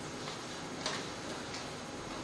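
A few faint, sharp clicks at uneven intervals, the loudest a little under a second in, from small objects being handled on a table, over steady room noise.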